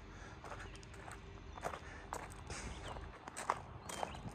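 Faint footsteps on gravel, a handful of uneven steps.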